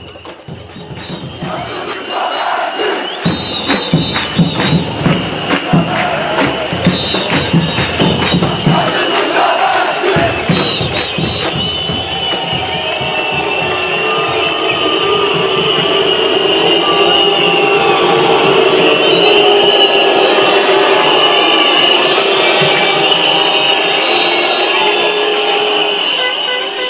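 Large protest crowd chanting and cheering, swelling up over the first two seconds. Sharp rhythmic claps or strikes run through the first several seconds, then the voices merge into a sustained, wavering roar.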